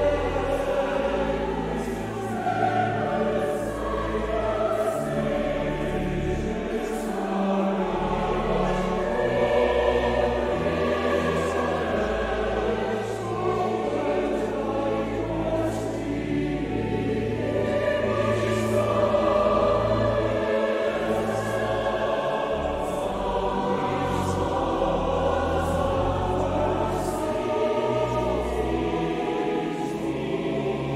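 Mixed choir of men's and women's voices singing a choral piece, sustained chords moving continuously with steady low notes underneath.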